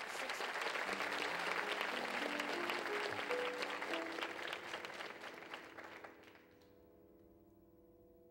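Studio audience applauding while the band plays a short phrase of notes stepping upward. The applause dies away about six seconds in, leaving a held chord.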